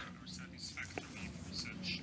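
Faint, low speech of a man talking at a conference-room microphone, heard beneath a pause in the louder interpreted voice. A light click comes about a second in.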